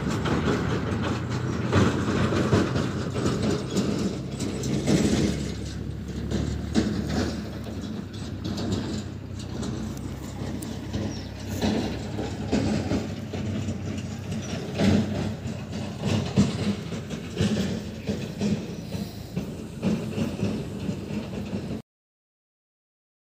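A vehicle running, with a steady low hum under continuous rattling and clatter; it cuts off suddenly near the end.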